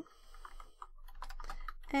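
Computer keyboard typing: a run of quick, uneven keystrokes.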